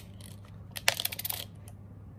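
Small plastic counters clicking against each other and against plastic tubs as a handful is picked out of one tub and dropped into another: a quick cluster of light clicks in the middle.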